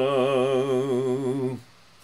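A man's voice chanting Shabbat prayer, holding one long low note with a wavering vibrato that stops about one and a half seconds in.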